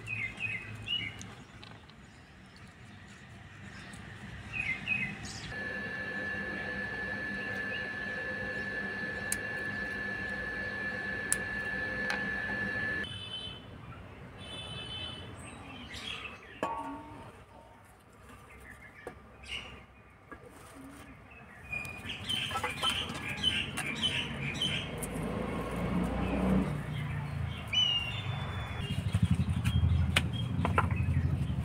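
Birds chirping in scattered short calls, most of them bunched in the last third. A steady high-pitched tone holds for several seconds in the first half.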